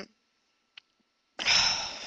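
A woman sighs: after a short pause, one breathy exhale about a second and a half in, fading away.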